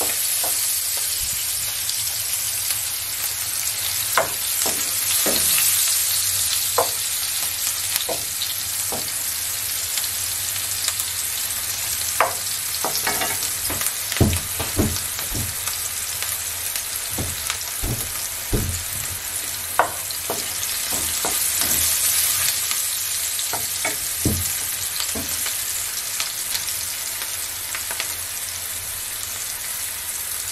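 Sliced onion and green chilli sizzling in hot oil in a nonstick frying pan, a steady hiss, with a wooden spatula knocking against the pan every second or two as it is stirred.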